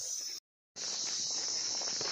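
A steady high-pitched insect drone with footsteps on a dirt path, broken by a sudden gap of total silence about half a second in.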